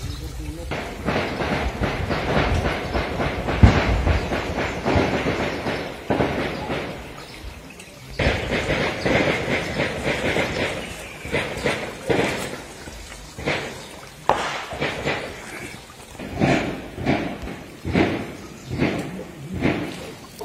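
People talking, the words unclear.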